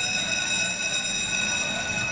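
A steady, high-pitched tone with several overtones, held unbroken.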